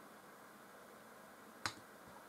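A single short, sharp click about one and a half seconds in, a computer pointer button pressed to select a menu item, over near-silent room tone.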